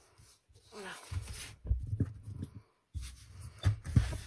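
Desk handling noise: a sheet of paper shifted across a cutting mat and hands moving, with a few knocks near the end.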